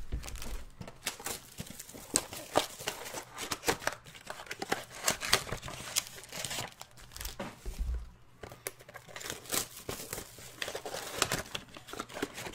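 Foil trading-card packs crinkling and crackling in irregular bursts as they are pulled from Panini Prizm blaster boxes and stacked, with some tearing of the boxes' cardboard. A dull thump at the start and another about eight seconds in as packs or boxes are set down.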